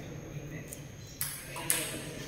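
Table tennis ball strikes during a rally: a sharp burst a little past halfway and a louder, ringing ping near the end, over a low murmur of voices.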